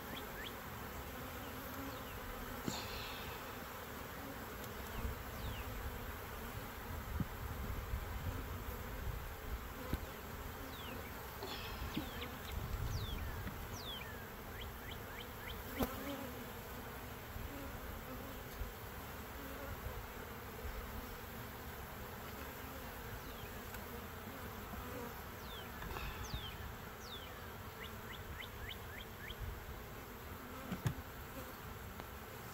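Honeybees buzzing steadily in large numbers around an open, crowded beehive. A few light knocks from the wooden hive parts being handled.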